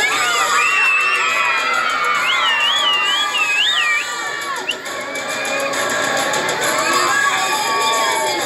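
A crowd of children shouting and cheering, with many high, wavering shouts overlapping in the first half, easing off in the middle and rising again near the end.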